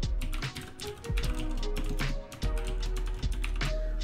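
Fast typing on a computer keyboard, a quick stream of key clicks, over background music.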